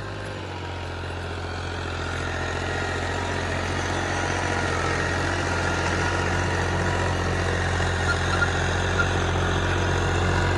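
Diesel farm tractor engine running steadily as the tractor pulls a tillage implement across a ploughed field, growing slightly louder over the first couple of seconds.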